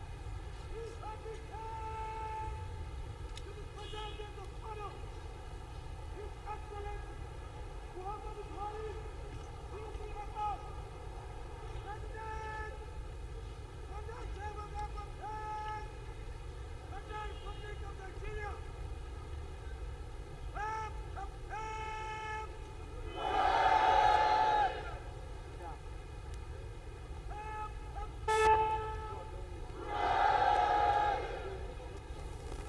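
Parade-ground words of command called out across the square in long, drawn-out shouts. Two louder, long calls come about 23 seconds in and again at the very end, with a sharp click shortly before the last.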